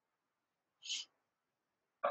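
Near silence, broken about a second in by one brief, soft hiss.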